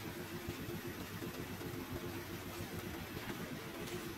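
Steady low rumble of an idling engine.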